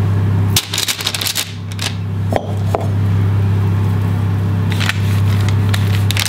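Hands shaping sticky scone dough and setting it on a parchment-lined baking tray: soft rustling of the paper and a few light taps. Under it runs a loud steady low hum, which fades for about two seconds from about half a second in, then returns.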